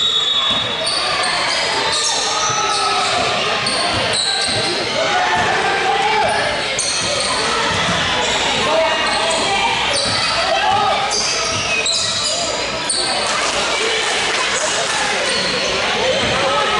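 A basketball being dribbled on a hardwood gym floor during a game, with voices calling out, all echoing in a large gym hall.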